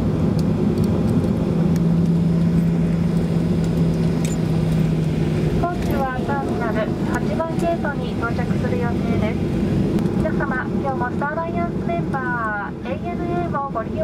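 Cabin noise of a Boeing 737-800 taxiing, its CFM56 engines at idle: a steady rumbling hum with a low steady tone over the first few seconds. From about halfway, a cabin public-address announcement voice speaks over the hum.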